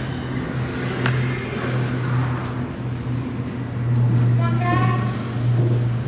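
A steady low hum runs under everything. A short voice sounds about four and a half seconds in, and there is a single sharp click about a second in.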